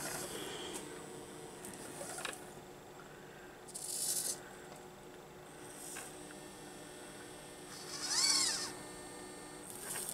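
Hobby servos of a 3D-printed EEzyBotArm 2 robot arm whirring as the arm moves through its pick-and-place loop: a short buzz about four seconds in, and a whine that rises then falls in pitch a little after eight seconds, over a low steady hum.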